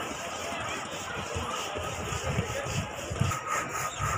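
Indistinct talk of people in the background over outdoor ambience, with irregular low rumbles throughout.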